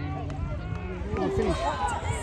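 Children's voices calling out during play, with a cluster of short shouts in the second half, over a steady low rumble.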